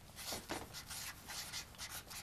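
Marker pen writing on a flip chart pad: a quick, irregular run of short strokes as the letters are drawn.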